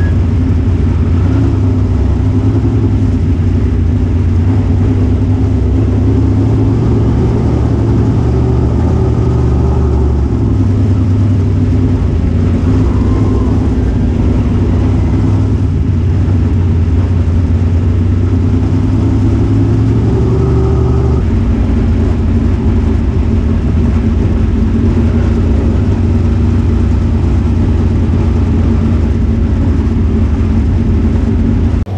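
Dirt Super Late Model race car's V8 engine running at low speed, heard loud from inside the cockpit. It is a steady drone that shifts pitch about ten seconds in and again about twenty seconds in.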